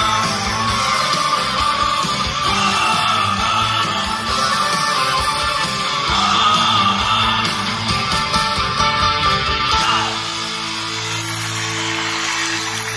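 Live rock band playing, with guitar, keyboards, drums and singing, heard from the audience in a theatre. About ten seconds in the music thins to a few steady sustained notes.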